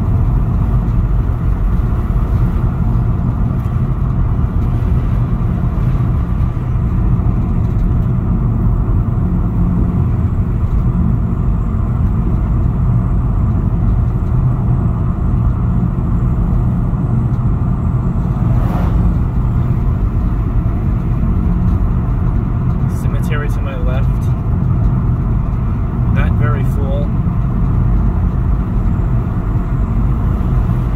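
Car cabin noise while driving on a narrow back road: a steady low rumble of tyres on the pavement and the engine. There is a brief knock about nineteen seconds in, and two short wavering, voice-like sounds a few seconds apart near the end.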